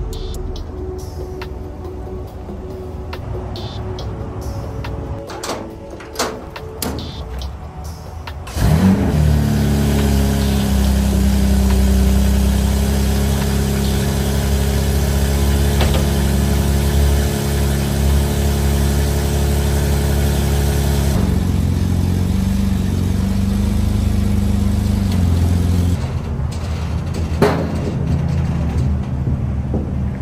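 BMW M4 Competition's twin-turbo inline-six engine starting about a third of the way in, then idling steadily, its tone shifting twice near the end.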